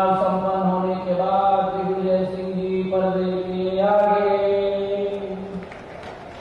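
A man's voice through microphones chanting one long, drawn-out call at a steady pitch. It holds for about five and a half seconds, the vowel changing a few times, then stops.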